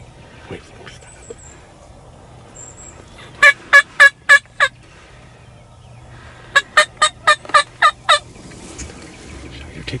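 Two loud series of wild turkey yelps, five notes and then seven, at about four notes a second.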